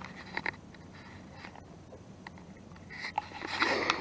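Handling noise from the camera being picked up and moved: a few light clicks, then rustling that grows louder near the end.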